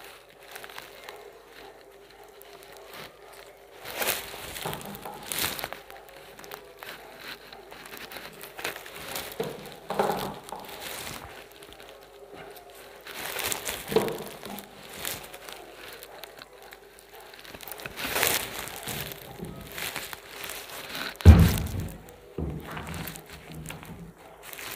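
Raw chicken pieces in a wet spice marinade squeezed and mixed by hand in a metal bowl: irregular squelching and scraping, with a louder thump about 21 seconds in.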